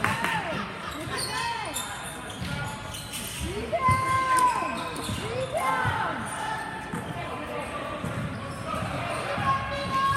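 Basketball game on an indoor hardwood court: a ball bouncing and sneakers squeaking on the floor in several short squeaks that rise and fall in pitch, echoing in a large gym.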